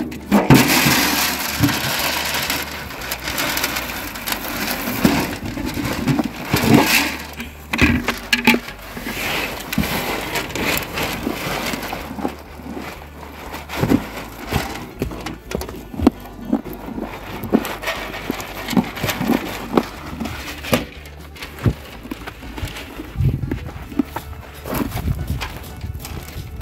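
A horse eating shelled yellow corn and feed pellets from a metal wheelbarrow: irregular sharp crunches and the rustle of grain as its muzzle works through the feed, with background music underneath.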